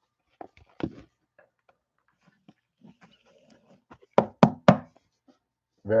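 A trading card in a soft plastic sleeve being slid into a rigid plastic top loader: soft plastic clicks and rustles, then three sharp knocks in quick succession about four seconds in.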